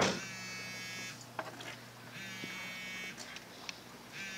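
Mobile phone vibrating for an incoming call, buzzing in bursts of about a second with gaps of about a second between them.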